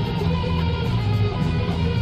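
Rock band playing live on an audience recording: a bass guitar carries a heavy low end under electric guitar and drums. The music runs steady and loud with no break.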